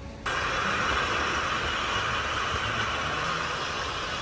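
Steady rushing noise of fast-flowing water, starting abruptly about a quarter second in and holding level throughout.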